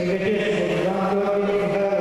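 A person's voice holding one long drawn-out shout or chant at a steady pitch, dipping slightly about a second in, over the hall's background noise.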